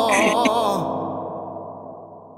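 A man's last sung note, with vibrato, trails off breathily within the first second. A keyboard chord under it rings on and fades away.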